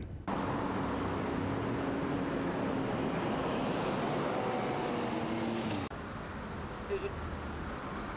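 Road traffic passing on a city street: a steady rush of vehicles with the hum of engines. About six seconds in it drops suddenly to a quieter background of street noise.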